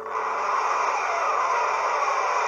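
A steady rushing noise that starts abruptly over a faint low hum.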